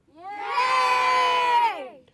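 A group of children cheering together in one long shout that swells in and drops in pitch as it dies away near the end.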